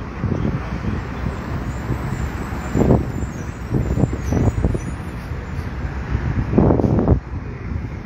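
Steady street traffic noise, a low rumble with two brief louder swells about three seconds in and near the end.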